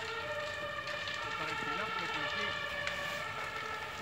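A house roof fire burning, with a few faint crackles, over a steady held tone of several pitches that does not rise or fall.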